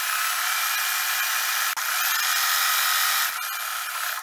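Electric sewing machine running steadily, sewing a straight stitch along a knit skirt's side seam, with a brief break a little before halfway.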